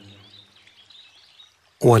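A pause in a man's chanted recitation of Arabic supplications: the last word fades out, and a faint background of bird chirps is heard under it. The recitation resumes near the end.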